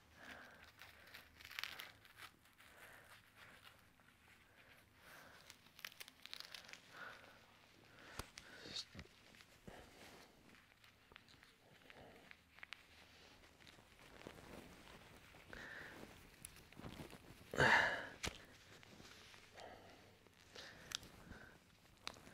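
Faint rustling and small clicks of a nylon tourniquet strap, buckle and windlass being handled and adjusted round a trouser leg, with one short louder rasp about three-quarters of the way through.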